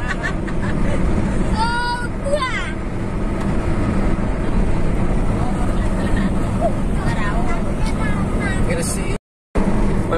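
Steady road and engine noise heard inside a car cruising at highway speed, with a brief voice about two seconds in. The sound cuts out for a moment near the end.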